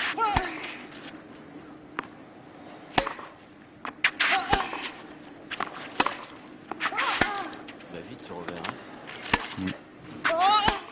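Tennis ball struck back and forth in a baseline rally on a clay court, a racket hit about every one and a half seconds. On some of the hits a player lets out a short grunt.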